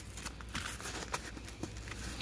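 Faint handling sounds of a fabric seat cover being worked around a plastic seat-back latch by hand: soft rustling with a few scattered light clicks and taps.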